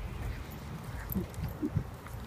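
Footsteps of a person walking with a dog at heel, a few soft steps in the second half over a low steady hum.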